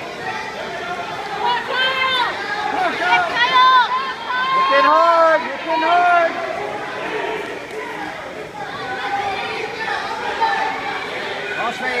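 Several people shouting at once, overlapping unintelligible yells of encouragement, loudest about four to six seconds in.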